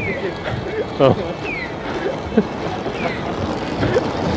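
City street noise of passing traffic with wind on the microphone, while a short falling electronic chirp repeats about every second and a half, the audible signal of a pedestrian crossing.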